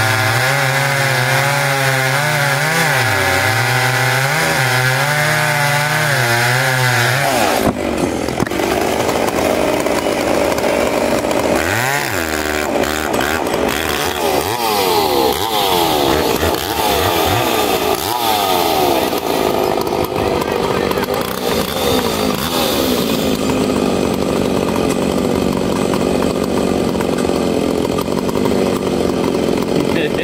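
Large yellow chainsaws cutting through a big log from both sides under load, the engine pitch wavering as they bog in the wood. About seven and a half seconds in the cut finishes and the saws come off load, then rev up and down unevenly and settle into a steady idle near the end.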